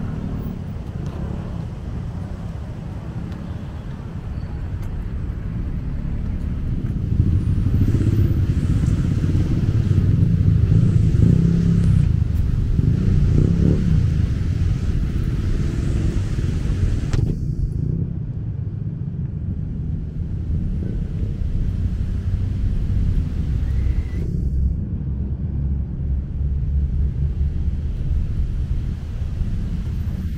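Outdoor street ambience: a steady low rumble of road traffic, cars and motorbikes passing on a busy boulevard, swelling in the middle. The higher hiss drops out suddenly partway through and returns a few seconds later.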